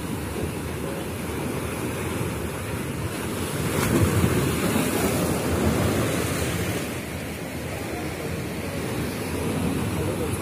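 Sea waves surging and breaking over rocks below a seawall, a steady rush that swells for a few seconds near the middle, with wind buffeting the microphone.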